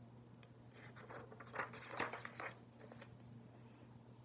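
Faint rustle of a picture book's paper page being turned: a few soft brushing, crinkling sounds clustered between about one and two and a half seconds in.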